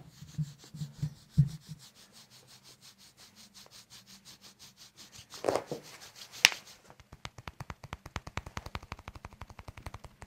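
Hands rubbing and patting on a bare back close to a condenser microphone: a rapid, even patter of soft taps, about eight to ten a second, that gets louder after about seven seconds. A louder rub comes about five and a half seconds in, and a sharp click a second later.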